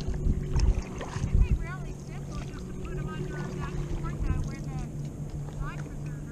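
Stand-up paddle strokes and water against the board, with wind buffeting the action-camera microphone in the first second or two. A steady low hum runs underneath, and a faint voice talks in the background.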